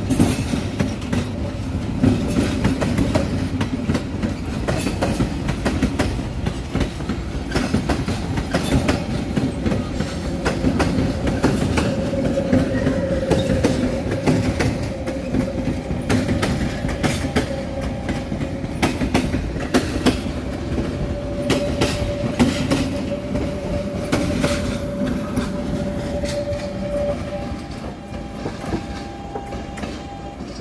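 SuperVia Série 500 electric multiple unit passing close by, its wheels clicking and clattering over rail joints and points, with a steady hum under the clatter that fades near the end.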